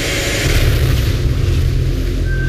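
Film-trailer sound design: a loud, deep rumbling boom with a rushing whoosh that swells about half a second in.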